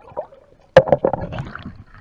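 Water splashing and sloshing around a waterproof camera as it is lifted out of the water. A sudden loud splash comes about three-quarters of a second in and is followed by about a second of sloshing.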